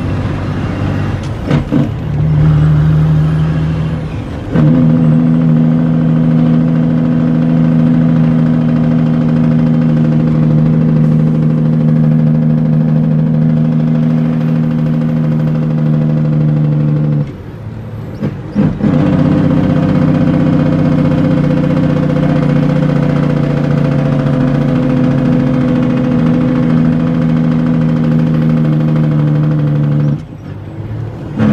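International 9400 truck's diesel engine running steadily under load, heard inside the cab. The engine note drops off briefly about 17 seconds in and again at the end, as at gear changes.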